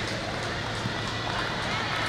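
Steady hall noise of an indoor sports arena, with faint distant voices.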